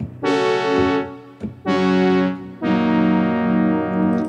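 Roland Zenology Pro software synthesizer playing its 'JX Cream' synth-brass preset: three sustained tones, each held about a second, with a short gap after the first.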